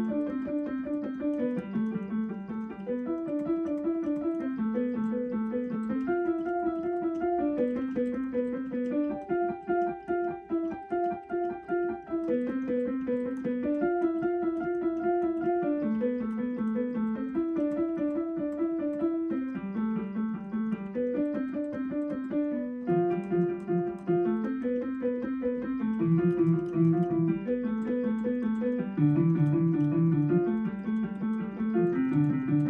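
Piano played in a fast, even stream of single notes, broken-chord figures in the middle register with the harmony changing every second or two.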